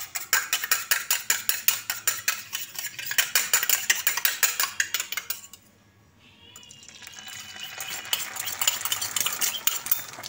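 Eggs being beaten in a steel bowl with a metal utensil, about six rapid clinking strokes a second. The beating breaks off for about a second and a half after five seconds, then resumes more softly.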